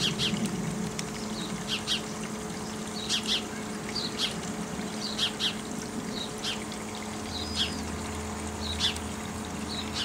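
Small birds chirping in short, scattered calls over a steady low hum. A deeper rumble joins about two-thirds of the way through.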